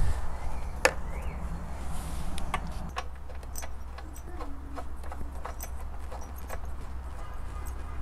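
Light, scattered metallic clicks and taps as a spark plug is threaded by hand back into a Briggs & Stratton lawnmower engine, with a ratchet and socket clinking against the engine cover. A low steady rumble runs beneath.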